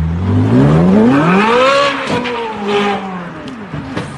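Ferrari sports car's engine revving hard under acceleration, its pitch climbing steeply for about two seconds, then falling away as the throttle comes off.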